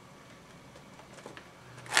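Faint rubbing and light clicks of a felt-tip marker drawing on a latex balloon and of the balloon sculpture being handled. A man's voice starts right at the end.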